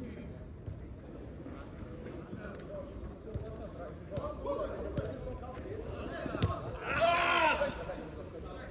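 Distant players' voices across a football pitch, with several sharp thuds of the ball being kicked. One player's loud shout near the end.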